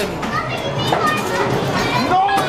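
Children playing and calling out in a busy, echoing hall, with a single sharp knock about a second in.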